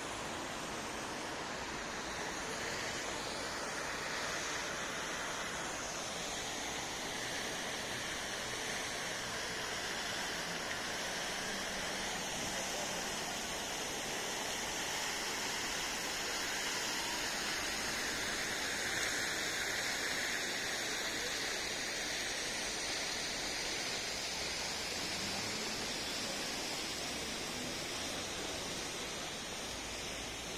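Steady outdoor city ambience: an even hiss-like wash of distant sound, with faint slow swells and no distinct events.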